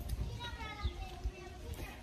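Faint, distant children's voices at play, with wind buffeting the microphone in low, irregular thumps.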